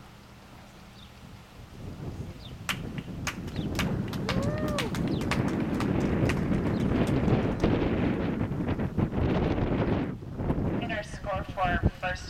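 Wind buffeting the microphone: a loud rushing noise with scattered crackles that builds up about two seconds in and stays loud until near the end. A voice is heard near the end.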